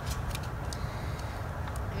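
Small plastic clicks and snaps, several scattered through the two seconds, as the back cover and battery of a Samsung Galaxy Ace 4 are pressed back into place by hand, over a low steady rumble.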